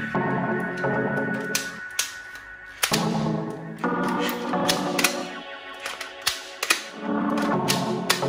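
Background music, with a scatter of sharp plastic clicks and snaps from a toy M416 rifle as its parts are handled and moved.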